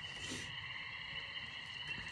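A steady chorus of small calling animals, holding two high, even pitches without a break.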